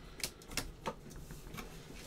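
A few faint, sharp clicks, spaced irregularly in the first second, over quiet room tone.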